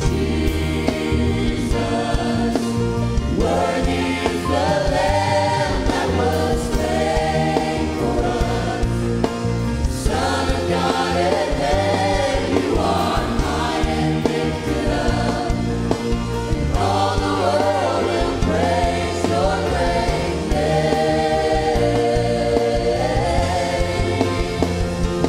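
Gospel worship choir singing in unison and harmony over a live church band of keyboards, bass guitar and drums.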